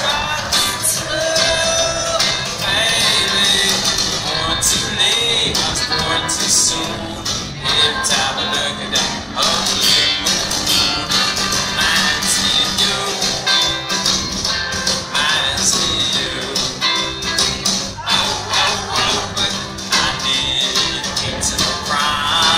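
A live rock band playing a song, with acoustic guitar, bass guitar and drums, and a steady beat.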